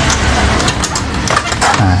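Road traffic noise: a motor vehicle going past on the street, heard as a low rumble under a steady wash of traffic sound.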